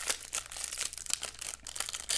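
Crimp-sealed plastic wrapper of a trading-card pack being torn open and crinkled by hand: a quick, irregular run of crackles and rustles.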